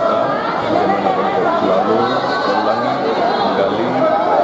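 Crowd chatter: many people talking at once in a large, echoing hall, with no single voice standing out.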